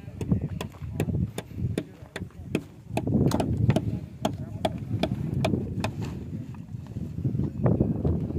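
Footsteps on stony, gravelly ground at a walking pace, about two to three sharp crunches a second, over a low rumble.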